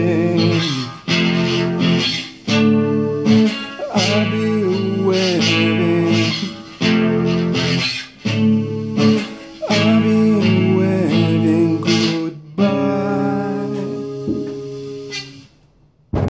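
Acoustic guitar playing repeated chord phrases of a slow progressive-metal song, each phrase broken off by a short pause, with a voice singing over some of them. A last chord is left to ring and fades away near the end.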